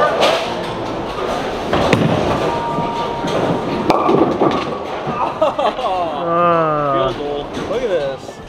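A bowling ball thuds onto the lane and rolls, then knocks into the pins with a clatter about four seconds in. It is followed by a long, wavering vocal exclamation without words.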